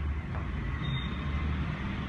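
Steady low rumbling background noise with no clear event in it.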